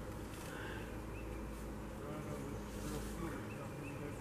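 Faint woodland ambience: a steady low hum with insects buzzing and a few faint, short high chirps scattered through it.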